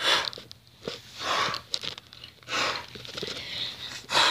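Short, breathy noise bursts close to the microphone, one every second and a half or so, like a person breathing in and out.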